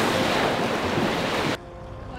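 Surf breaking on a beach with wind on the microphone, a steady rushing noise that cuts off suddenly about one and a half seconds in.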